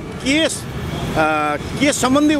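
Steady road traffic noise from passing motorbikes and cars, with a few short bits of nearby voices over it.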